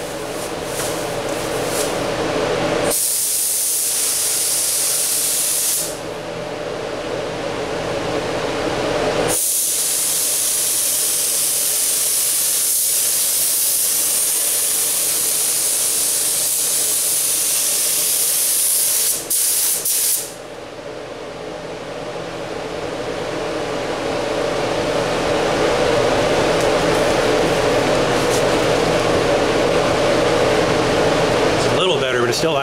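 Gravity-feed automotive spray gun hissing as it lays base coat: one pass of about three seconds, then after a pause a long pass of about eleven seconds that breaks off briefly near its end. A steady hum runs underneath and grows louder toward the end.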